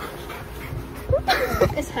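Teenage girls squealing and shrieking excitedly, starting about a second in, reacting to a coin toss coming up heads.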